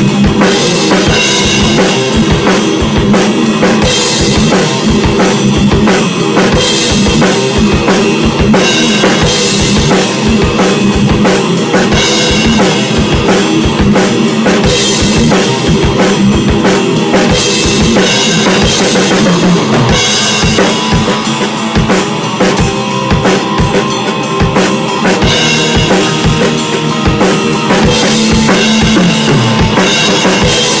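Heavy metal played on a TAMA drum kit and electric bass: fast, dense kick-drum and snare hits under continuous cymbal wash, with a steady low bass line. The cymbals thin out about two-thirds of the way through, then return near the end.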